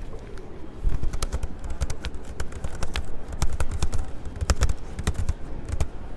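Keys tapped on a laptop keyboard: quick, irregular clicks starting about a second in, over a low rumble.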